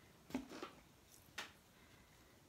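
Mostly quiet, with two brief soft knocks, one about a third of a second in and one later, as a large dried gourd is lifted and turned by hand.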